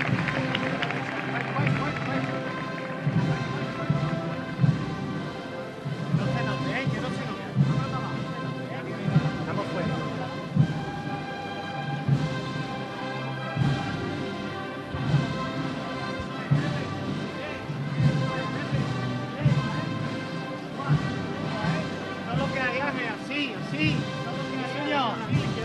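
A procession band playing a slow march: sustained brass chords over a bass drum struck about every second and a half.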